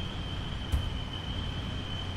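Room tone in a small presentation room: a steady low hum with a thin high whine over it, and a single sharp click just under a second in.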